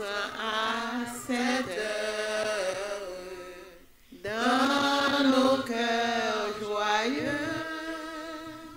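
Unaccompanied voices singing a slow, chant-like hymn in two long held phrases, with a brief break about four seconds in.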